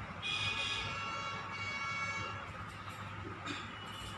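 A steady, high-pitched horn-like tone lasting about two seconds, with a fainter tone near the end, over a low background hum.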